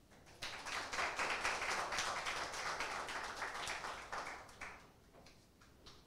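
Audience clapping, starting about half a second in and dying away a little before five seconds, followed by a few faint ticks.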